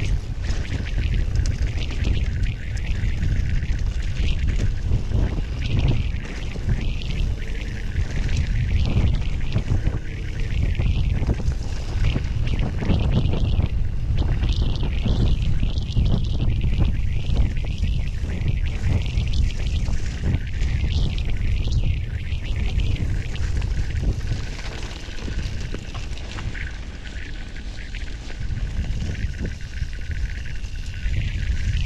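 Wind buffeting an action camera's microphone on a mountain bike riding downhill over a dirt and gravel trail, with tyre noise and many small knocks and rattles from the bike over bumps.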